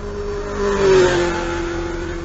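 Motorcycle engine rev sound effect: the engine note builds to its loudest about a second in, drops slightly in pitch like a bike passing, then holds and fades.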